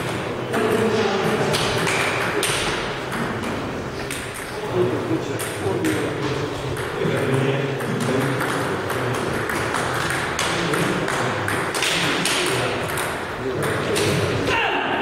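Table tennis ball clicking sharply on bats and table during rallies, with voices talking in a large hall.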